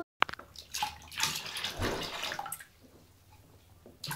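Bath water splashing and sloshing in a tub as a toddler dips, drinks from and tips a plastic cup, in a string of short splashes during the first two and a half seconds.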